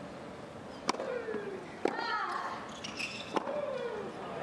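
Tennis ball struck by rackets in a rally: three sharp hits about a second or so apart, each followed by a short falling grunt from the player.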